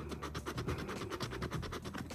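Scratch-off lottery ticket being scratched with a small round scraper: quick, rapid scraping strokes uncovering the numbers.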